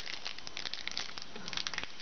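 Foil trading-card pack wrapper crinkling as it is handled, a dense run of small crackles that grows busier near the end.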